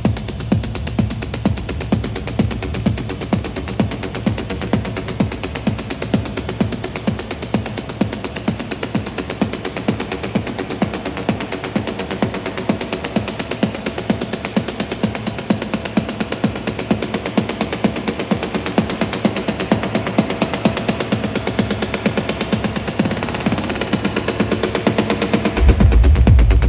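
Dark techno in a breakdown. The deep kick fades out about a second in, leaving a fast, rattling percussion loop and droning synth tones that slowly build in loudness. The heavy kick and bass come back in just before the end.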